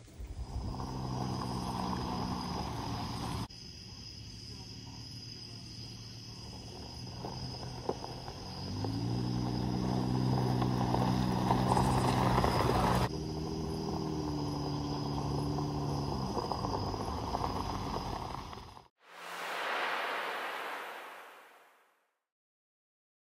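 A Jeep Wrangler JL engine idling, a low steady hum that rises slightly in pitch about nine seconds in, heard across several abrupt cuts with a steady high-pitched tone behind it. Near the end it cuts off and a short whoosh follows.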